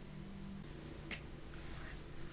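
Quiet room tone with a faint steady hum, broken by a single soft click about a second in and a fainter one near the end.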